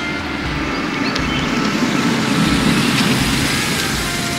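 Toyota Qualis MPV pulling slowly up a driveway: a steady low engine and tyre rumble that grows a little louder as it approaches.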